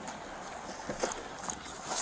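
A car pulling away, heard as a steady rushing noise, with scuffing and a few light knocks about a second in and again halfway through from an officer struggling half inside the car.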